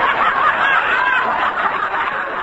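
Studio audience laughing, a loud crowd laugh that holds strong and begins to ease off near the end. It comes through the narrow, muffled sound of an old radio broadcast recording.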